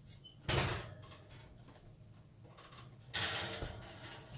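Oven door pulled open with a sudden clunk about half a second in, followed by a second, longer noisy clatter just past three seconds.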